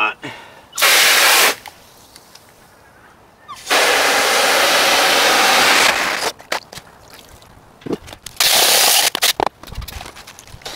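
Water spraying from a hose nozzle into a plastic basin of wet black-sand concentrates in three bursts, the middle one about two seconds long, with small knocks and plastic clatter between.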